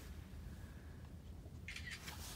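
Faint, steady low background rumble with no distinct event, and a brief faint hiss near the end.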